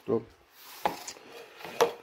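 A brief rustle and two short knocks, about a second apart, from kitchen items being handled on a countertop.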